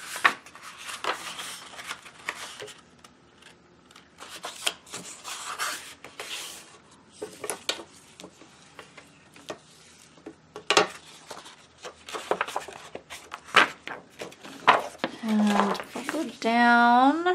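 Sheet of printer paper rustling and crackling as it is folded in half lengthwise and the fold is pressed and rubbed flat by hand, with scattered sharp crinkles.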